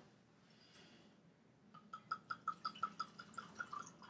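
Wine poured from a glass bottle into a glass, glugging in a quick even run of about six glugs a second that starts a little under two seconds in.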